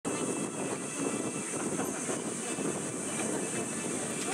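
Steady outdoor stadium ambience: a low murmur of spectators with a constant high-pitched hiss over it, and no single sound standing out.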